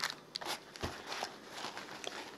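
Faint handling noise: light rustles and small clicks of a hand working at a fabric waist pouch and the items beside it, with one soft knock a little under a second in.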